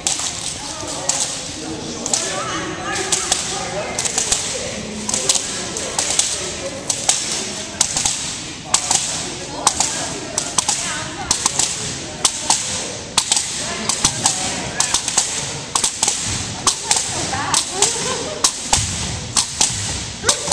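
Long jump rope smacking the wooden gym floor on each turn, a sharp slap repeated in a steady rhythm, with faint voices under it.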